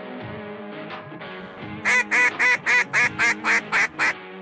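Background music with held tones; about two seconds in, a run of about nine duck quacks at roughly four a second.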